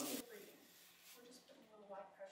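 Soft, low voices speaking too quietly for words to be made out, with a brief rustle at the very start.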